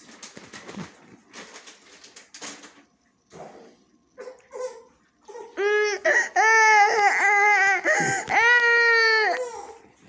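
A toddler whining and crying: after a few seconds of faint rustling, a run of loud, drawn-out, high-pitched wails begins about halfway through, and the last wail is the longest.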